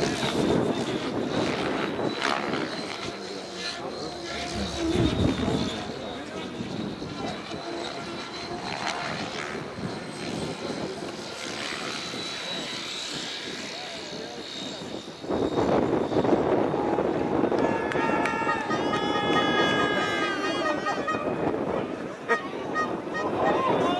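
Electric 3D RC helicopter flying, a steady high whine from its motor and rotor heard over voices of onlookers. About fifteen seconds in, the sound turns suddenly louder, with crowd noise and raised voices.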